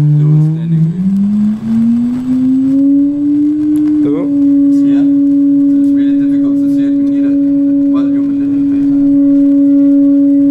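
A steady electronic test tone played through a loudspeaker into a flame-filled pyro board. It glides up in pitch from a low hum over about three seconds, then holds on one pitch that sets up a standing wave in the box, shown in the flame pattern.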